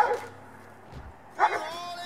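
German Shepherd on leash barking twice, once at the start and again about a second and a half in. This is reactive barking at nearby dogs.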